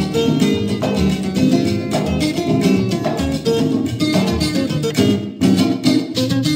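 Latin dance-band music with no singing: a plucked-string lead over bass and percussion, with a low bass accent about once a second. There is a brief drop just after five seconds, then a few hard accents.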